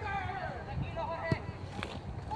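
Players' voices calling and shouting across a football pitch, with a single sharp knock about a second and a half in.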